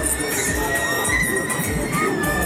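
Riders screaming on a spinning fairground ride, one long high scream held through most of the moment. Loud fairground music with a steady bass beat plays underneath.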